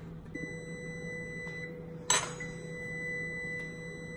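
Electric oven's timer sounding a steady high electronic tone, the signal that the baking time is up, with a single click about two seconds in.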